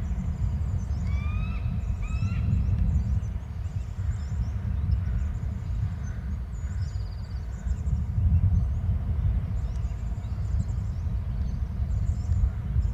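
Outdoor ambience under a steady low rumble, with small birds chirping faintly and high throughout. Two short rising bird calls come about a second apart near the start.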